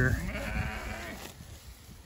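St Croix sheep bleating once, a wavering call about a second long that fades out.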